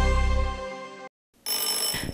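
A sustained music chord fades out over the first second and breaks off into a moment of silence; then an electric bell with a chrome gong starts ringing steadily.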